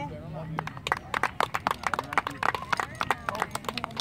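Indistinct chatter of a group of children and adults, with many irregular sharp clicks and taps throughout.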